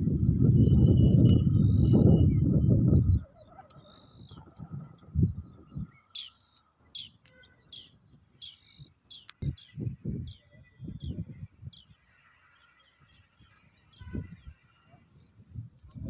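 Small birds chirping in a series of short, high calls through the middle of the stretch. These follow a loud low rumble that stops suddenly about three seconds in, with a few softer low thumps here and there.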